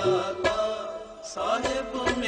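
Sikh kirtan: a devotional shabad in Rag Dhanasari, sung with instrumental accompaniment and drum strokes. The music softens briefly about a second in, then the singing picks up again.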